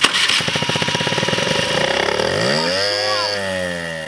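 Small scooter engine running unevenly on vodka sprayed into its intake manifold. It fires in a fast, regular patter for about two seconds, then briefly revs up and drops back: it is barely burning the fuel and keeps faltering.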